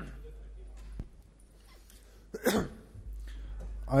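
A single short cough about two and a half seconds in, after a faint click about a second in.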